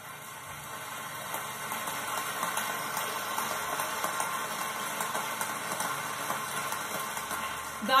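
Large audience applauding, building over the first couple of seconds and then holding steady, heard as played back through a television.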